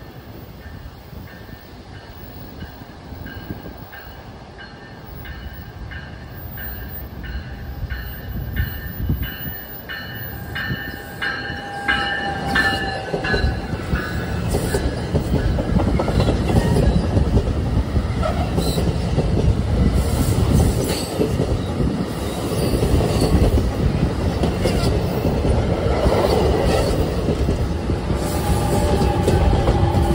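NJ Transit commuter train of multilevel coaches approaching and passing close by: at first a faint high ringing with regular clicks, then growing much louder from about halfway as the coaches roll past with wheels clicking over the rail joints, the pushing locomotive at the rear passing near the end.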